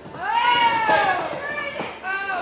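A high-pitched voice yelling from the crowd: one long drawn-out shout that rises and falls, then shorter calls, with a sharp knock near the end.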